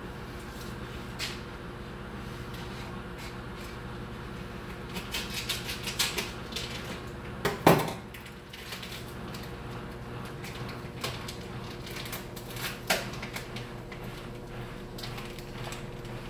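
Kitchen clatter from someone moving about off to the side: scattered clinks and knocks of things being handled, the loudest knock about halfway through and another near the end, over a steady low hum.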